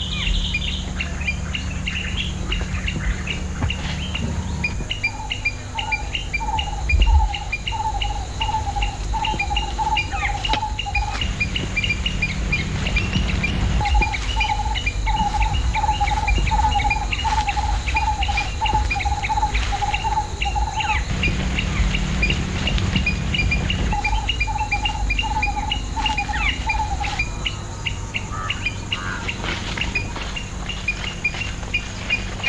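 Forest ambience of birds and insects: a fast, regular chirping throughout, and a repeated call sounding several times a second in three long runs. A low steady drone lies underneath, with a brief low thump about seven seconds in.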